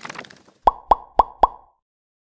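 Logo-reveal sound effect: a faint whoosh, then four quick rising pops about a quarter second apart.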